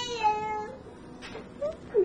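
A single drawn-out, high-pitched cry, held steady and then dipping slightly before it stops about two-thirds of a second in.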